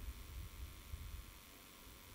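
Quiet room tone in a pause between sentences: a faint low rumble and a light even hiss, with no other sound.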